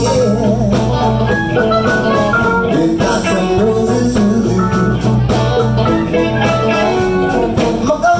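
Live electric blues band playing, with two electric guitars, bass, drums and keyboards, and a blues harmonica played through the vocal microphone.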